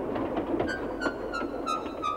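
Steam-locomotive sound effect: a steady hiss of steam with a run of five short tones stepping down in pitch, evenly spaced, in the second half.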